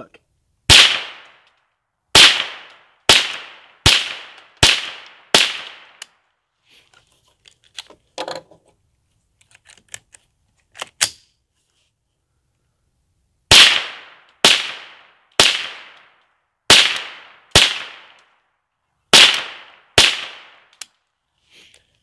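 .22 rifle firing a string of shots at a steady pace of roughly one a second, each a sharp crack that trails off briefly: six shots, a pause of about eight seconds with faint handling clicks, then seven more.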